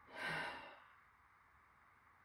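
A woman's short breathy sigh, under a second long, followed by near silence.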